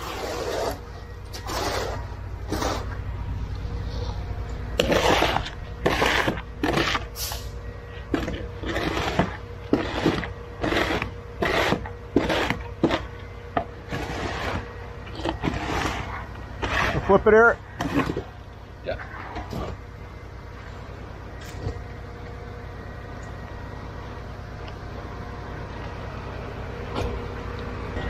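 Hand tools scraping and raking wet concrete in quick repeated strokes, over the steady low hum of the conveyor truck's engine. The strokes stop after about 18 seconds, leaving only the engine hum.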